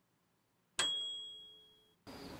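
Near silence, then about three-quarters of a second in a single bright metallic ding that rings at a few clear pitches and fades away over about a second.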